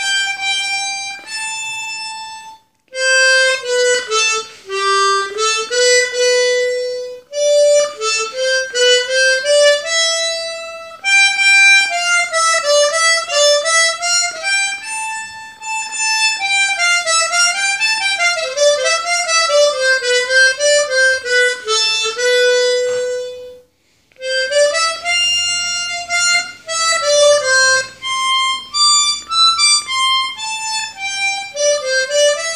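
Harmonica played solo, a slow melody of long held notes stepping up and down, with two short breaks, about three seconds in and again near 24 seconds.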